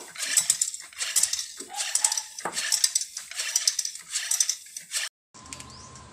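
Floor pump worked by hand, inflating a freshly patched bicycle inner tube: a rhythmic hiss of air with clicks on each stroke, about two strokes a second. The pumping cuts off abruptly about five seconds in.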